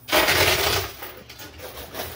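Quarters clattering and spilling inside a coin pusher machine: a sudden loud metallic rush that eases after about a second into scattered clinks.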